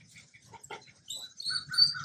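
A bird chirping in short, repeated notes, starting about halfway through, with a few faint clicks before it.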